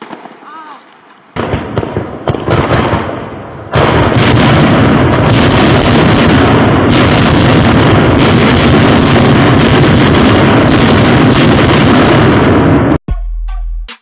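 A board of flash-bang salute tubes going off at once, fused together without extra visco: the bangs come so fast that they merge into one continuous, very loud crackling barrage. It starts about a second in, swells sharply a few seconds later, and runs for about nine seconds before cutting off suddenly near the end.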